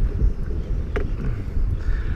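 Wind rumbling on the microphone aboard a small open boat on choppy water, with one short click about halfway through.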